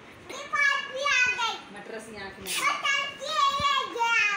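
A young girl's high-pitched voice, in several bursts.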